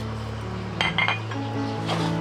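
A metal ladle clinking lightly against a small bowl a few times, about a second in and again near the end, over background music with held notes.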